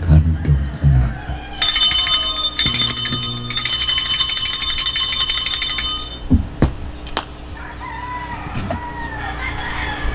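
Altar bells shaken rapidly in a continuous ringing for about four seconds, with two brief breaks, at the elevation of the chalice during the consecration. Two sharp knocks follow.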